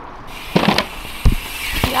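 Mountain bike hitting a small plastic kicker ramp: a short clatter about half a second in as the tyres go up the ramp, then a heavy thump of the landing a little past a second, with rushing tyre and air noise.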